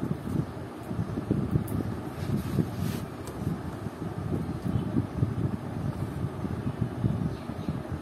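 Low, uneven rumble of background noise that keeps rising and falling, with no distinct events.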